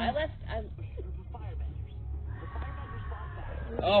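A distant, high-pitched scream, held steady for about a second and a half, starting a little past the middle.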